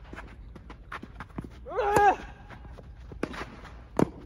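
Tennis rally: a tennis player's grunt with a racket strike on the ball about halfway through, among quick footsteps and scuffs on the court and fainter ball hits and bounces. A sharp racket strike comes at the very end.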